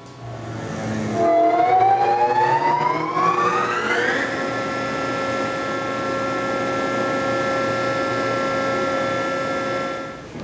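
Hydraulic piston pump running on a test stand: its whine rises steadily in pitch for about three seconds as it spins up, then holds a steady pitch with several tones together.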